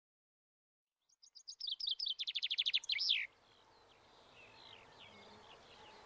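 A songbird singing one loud phrase, starting about a second in: quick high notes that speed up into a trill and end in a short flourish. Fainter bird chirps follow.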